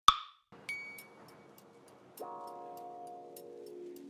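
Background music with a steady ticking beat. A sharp pop sound effect right at the start is followed by a short ding, and a held chord comes in a little after two seconds.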